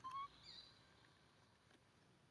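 Two brief, faint, high-pitched animal calls: a short chirp right at the start and a thinner, higher one about half a second in.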